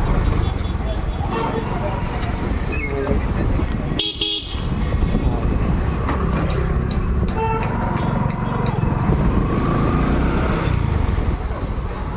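Street traffic: motor scooter and auto-rickshaw engines running, a vehicle horn tooting, and passers-by talking.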